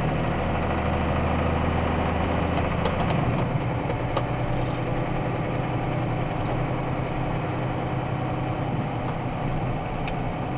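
Box truck's engine and drivetrain running while it gathers speed, heard inside the cab as a steady drone; the low engine note changes about three seconds in, with a few light clicks around then.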